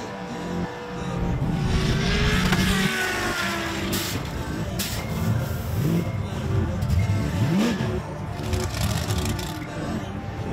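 Car engines revving in rising and falling sweeps, mixed with electronic background music.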